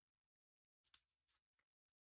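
Near silence: room tone, with one faint short rustle about halfway through.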